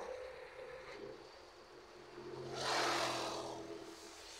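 Roadside traffic: a motor vehicle drives past, its engine and tyre noise swelling about two and a half seconds in and fading away near the end, over a low steady traffic hum.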